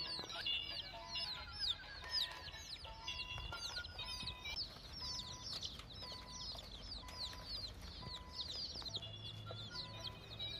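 A flock of chickens, mostly a dense run of rapid high peeping chirps, with some clucking underneath.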